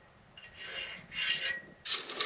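Steel pipe scraping as it is slid over its wooden supports: two short rubbing strokes of about half a second each, one in each half.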